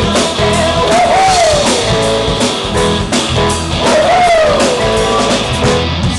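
Live rock band playing: drum kit, acoustic and electric guitars and bass, with a lead melody that bends up and down in pitch twice.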